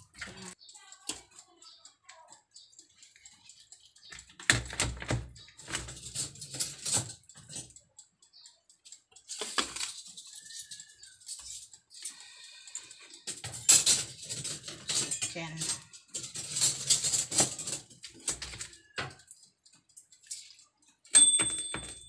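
Intermittent rustling and crackling as hands tear apart a roasted chicken, in irregular clusters, with muffled voices and a short high beep near the end.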